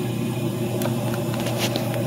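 Gas furnace running with a steady, even motor hum from its inducer and blower, the unit firing normally on a newly installed replacement control board.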